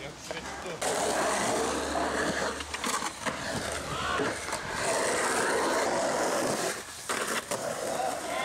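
Skateboard wheels rolling over rough concrete: a steady gritty rumble that runs for about two seconds, stops, then comes back for another two. A few sharp knocks follow near the end.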